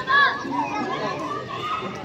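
Children's voices calling and chattering, with one louder high-pitched shout just after the start.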